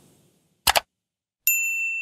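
End-card logo sound effects: the tail of a whoosh fading out, two quick pops, then a bright ding about a second and a half in that rings on as one steady high tone.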